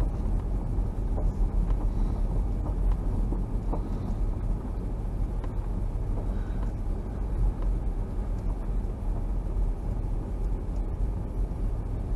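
Steady low rumble of a vehicle driving slowly over a gravel road, with its tyre and engine noise heard from inside the cabin. A few faint ticks sound over the rumble.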